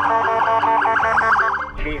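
A fire engine's electronic siren in a fast-cycling warble, loud, cutting out just before the end. A voice on the dispatch radio follows.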